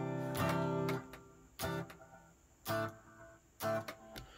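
Guitar strummed through a Line 6 POD Go patch set for an acoustic sound, with a Taylor acoustic impulse response in place of the bypassed amp, a compressor, and the Mod/Chorus Echo delay mixed in at about 20%. One chord rings for about a second, then three shorter strums follow about a second apart.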